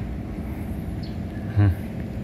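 A man's single short exclamation, "huh", about one and a half seconds in, over a steady low background rumble.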